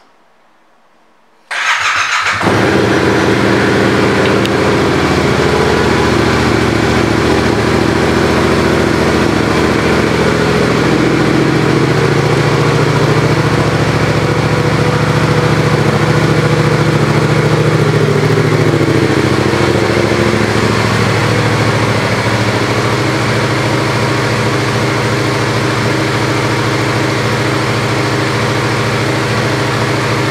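A 2018 Yamaha MT-07's 689 cc parallel-twin engine, fitted with a Yoshimura aftermarket exhaust, is started about a second and a half in and then idles steadily.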